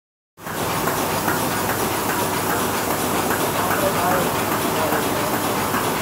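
Bobst Ambition folder-gluer running in a factory hall: a steady, unbroken mechanical noise that starts a moment in, with faint distant voices under it.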